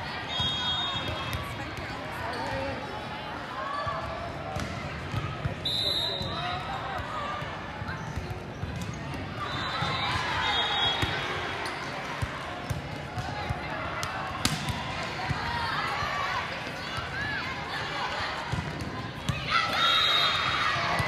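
Volleyball match din: many overlapping voices of players and spectators, with sharp smacks of the volleyball being served and struck, one loud hit about two-thirds of the way through, and voices swelling near the end.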